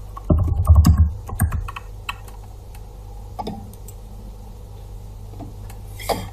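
Computer keyboard typing: a quick run of keystrokes with dull thuds in the first second and a half, then a few scattered single clicks.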